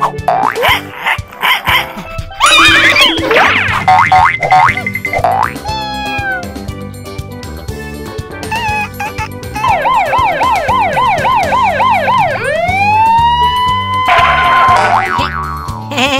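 Cartoon soundtrack music with sound effects: quick sliding and boing-like pitch glides in the first few seconds, then a warbling siren sound effect from about ten seconds in, followed by a tone that rises and holds steady before breaking off shortly before the end.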